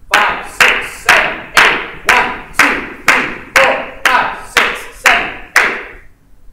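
Hand claps beating a steady marching tempo: twelve loud, evenly spaced claps, about two a second, keeping time for a count-in and eight marching steps.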